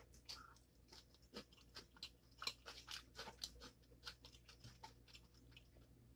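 Faint close-up chewing of a mouthful of ramen noodles: soft, irregular wet mouth clicks and smacks.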